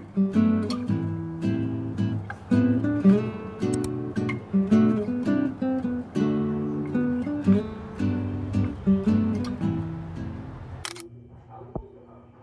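Background music of plucked acoustic guitar notes. It cuts off about eleven seconds in with a single sharp click.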